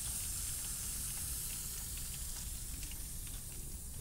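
Steady hiss of water spraying in a thin jet from a freeze-cracked valve fitting on a pressurized water line, a little fainter toward the end.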